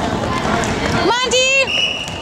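Footsteps running on a hardwood gym court under crowd voices. About a second in comes a loud half-second yell, then a referee's whistle blows one steady blast near the end to stop play.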